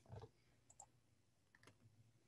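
Near silence broken by a few faint clicks of a computer keyboard.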